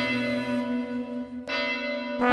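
A church bell tolling: struck right at the start and again about a second and a half in, each stroke left ringing.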